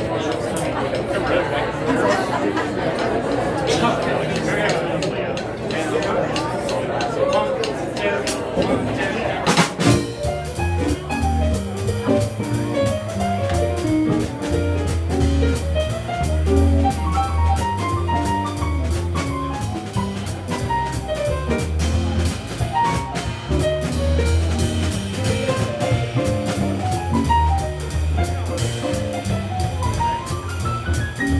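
Audience chatter, then about ten seconds in a jazz big band starts a blues with a sharp hit. A bass line moves note by note under a drummer's cymbal keeping a steady beat, with keyboard and horns.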